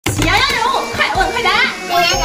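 A child's voice talking over background music.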